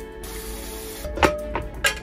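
Stainless steel pots clanking against each other three times in quick succession in the second half, as a hand takes one from a rack. Background music and a short hiss come before the clanks.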